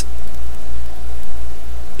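A steady, loud low hum with slight regular pulsing, under a faint hiss.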